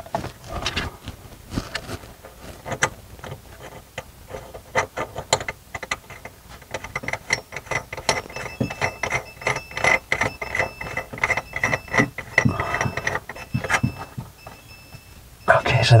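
A metal mounting nut being screwed by hand onto a kitchen soap dispenser's threaded shank under the counter: irregular clicking and scraping of the nut and washer turning on the threads, with a thin squeak through the middle.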